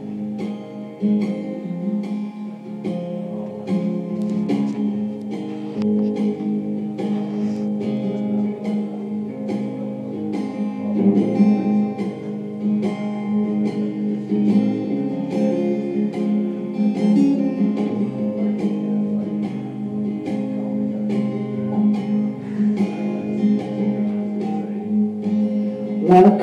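Acoustic guitar playing a song's instrumental intro, with chords struck in a steady, even rhythm.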